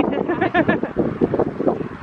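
Several people's voices, indistinct, with wind buffeting the microphone.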